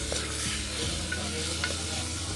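Oil sizzling as soaked chana dal and onions fry in a pressure cooker pot, with a wooden spatula stirring and scraping through them, a few light knocks against the metal.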